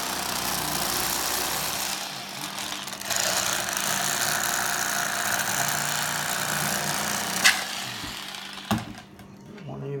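Electric fillet knife running steadily, its motor buzzing as the serrated blades cut through a perch, with a sharp click about seven and a half seconds in; the knife stops with a knock about nine seconds in.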